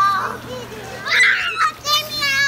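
Young children squealing and shrieking in play, the loudest shriek about a second in, over a steady low hum from the hot tub's running jets.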